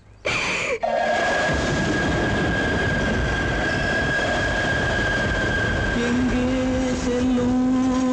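A short sharp sound, then a loud, steady rushing noise with a thin high whistle-like tone running through it, from a film soundtrack. About six seconds in, a held low note with overtones joins, like a sustained instrument or voice.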